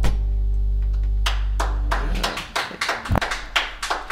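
A band's final acoustic chord ringing out and fading over about two seconds. A few people start clapping about a second in, in sharp, uneven claps.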